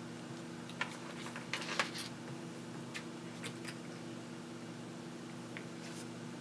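A handful of light clicks and taps as small electronic parts are handled in the helping-hands jig and touched with a coating brush, mostly in the first half, over a steady low electrical hum.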